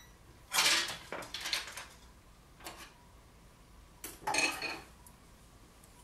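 A pair of pliers being picked up and handled against the wooden turntable: short bursts of metal clinking and clattering, four in all, the loudest about half a second in and about four seconds in.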